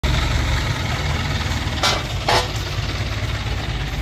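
A vehicle engine idling with a steady low rumble, with two brief sharp noises a little before and after the halfway point.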